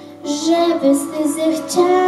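A young girl singing into a handheld microphone over musical accompaniment; her voice comes back in just after the start, following a quieter instrumental moment.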